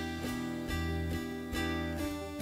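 Live worship-band music in an instrumental passage with no singing: strummed acoustic guitar chords, changing about every second.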